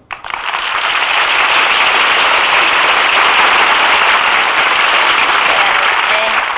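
Studio audience applauding, breaking out as a song ends and holding steady throughout.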